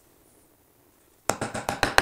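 Small hammer tapping a glued wooden dowel down into its drilled hole in a wooden base: a rapid run of about seven sharp taps, starting just over a second in.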